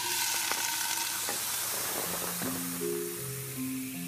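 A hissing, sizzling noise starts suddenly and slowly dies away. Music with sustained notes comes in about two seconds in.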